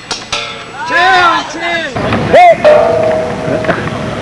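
Excited shouts and exclamations from players outdoors, the loudest a sharp yell about two and a half seconds in. A sharp knock comes right at the start, and a steady held tone lasts about a second near the end.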